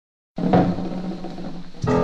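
Swing band playing a rumba-flavoured blues, the start of the record. After a brief silence the music starts with a hit and low held notes, and more instruments come in louder near the end.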